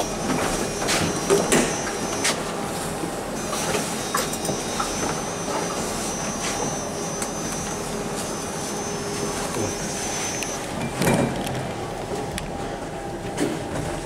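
Steady running noise inside a 2012 KONE MonoSpace machine-room-less traction elevator car, with a faint high whine that stops about ten and a half seconds in, scattered light clicks, and a short knock about eleven seconds in.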